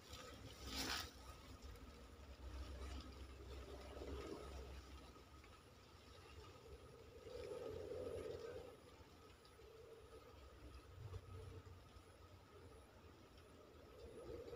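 Near silence: faint outdoor background with a low rumble, and a brief rustle about a second in.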